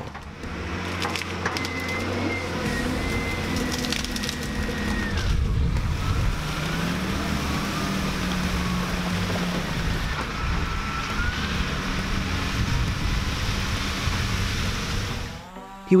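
Wheel loader's diesel engine running hard under load with a high whine that falls away about five seconds in, and sharp cracks of wood splintering as it pushes a tree over.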